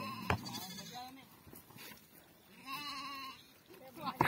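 Sheep and goats bleating in a flock: a few short wavering bleats, then one longer bleat near the end. A single sharp knock sounds a fraction of a second in.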